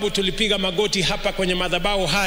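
Only speech: a man speaking into microphones.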